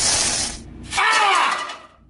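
Aluminium foil crinkling loudly, then about a second in a short high-pitched vocal cry that rises and falls.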